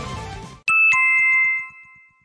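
Background music fades out, then a two-note falling chime sounds, a bright ding followed at once by a lower one, ringing out for about a second.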